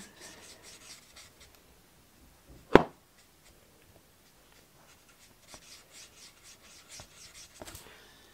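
Felt-tip nib of a Stampin' Blends alcohol marker rubbing back and forth on cardstock, faint scratchy strokes as the ink is blended over the same patch. A single sharp click a little under three seconds in.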